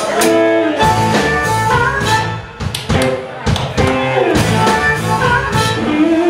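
Live blues band playing: a harmonica holds and bends notes over electric guitar, bass and a drum kit.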